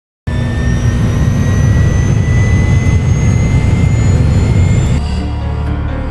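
Jet airliner engines spooling up, a rising whine over a deep rumble, cutting in abruptly. About five seconds in it gives way to dramatic film music.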